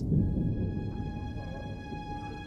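Eerie ambient soundtrack music: sustained high tones held over a low rumble, with more tones entering about a second in.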